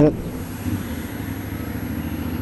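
A 2012 Suzuki V-Strom DL650's V-twin engine, fitted with an Akrapovic exhaust, running steadily at low road speed with road noise.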